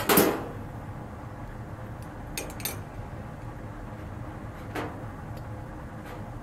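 Light clinks and knocks from handling small glass candle jars and a metal wick bar: one louder knock at the start, then a few faint ticks about two and a half and five seconds in, over a low steady hum.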